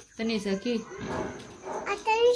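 A voice speaking in short, broken phrases, most likely a young child's, with pauses between them.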